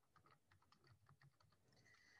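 Very faint computer keyboard typing, a quick run of soft key clicks barely above silence, as a word is typed.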